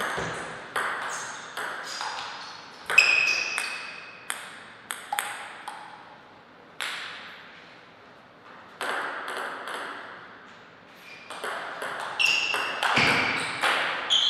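Table tennis ball clicking off the rackets and the table in two quick rallies, each hit sharp and some followed by a short ringing ping. The first rally fills about the first seven seconds; a second starts about two seconds later and runs to the end.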